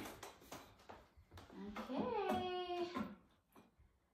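A short wordless voice sound, sliding down and then holding one note for about a second, after a few faint handling clicks.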